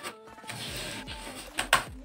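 Faint background music, with two sharp clicks close together near the end as the laptop lid is opened and hands are set on the keyboard and touchpad.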